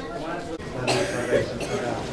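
A man coughing and clearing his throat into a handheld microphone as he takes it, with talking around it.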